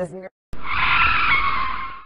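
A loud screeching sound effect about a second and a half long. It starts abruptly after a brief silence and fades out at the end.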